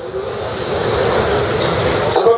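Steady rushing noise with no speech over it, rising a little in the first second and then holding level.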